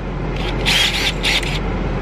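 Handling noise as a cordless drill is picked up and shown: two short scuffing rubs, each about half a second, over a steady low hum. The drill's motor is not running.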